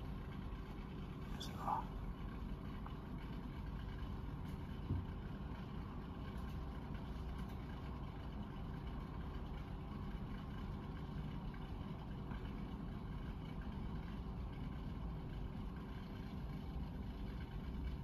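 Steady low background rumble with a faint hum, with a single short click about five seconds in.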